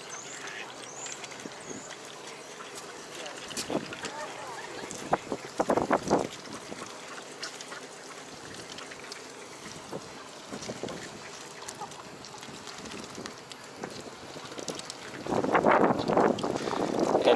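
Mallard ducks quacking now and then, with a loud run of quacks around five to six seconds in, over a steady outdoor background; a louder, noisier sound builds near the end.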